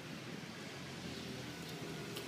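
Steady outdoor background noise, an even hiss of distant traffic, with no distinct sounds standing out.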